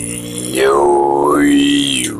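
A man's voice holding a long, steady sung note while the vowel sound slides and returns, a little quieter in the first half second.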